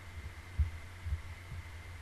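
Steady low electrical hum with a thin high tone above it, picked up by a desk microphone, and a few soft low thumps, the two strongest about half a second apart near the middle.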